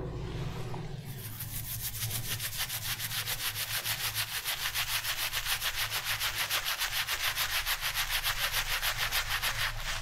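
Pearl SBC 404 synthetic shaving brush face-lathering shaving cream on the cheek and jaw. It makes a quick, even swishing rhythm of about five strokes a second, starting about a second in.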